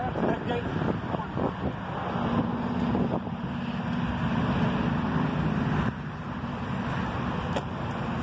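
Wind buffeting the microphone outdoors, with a steady hum that comes in about two seconds in and stops about six seconds in.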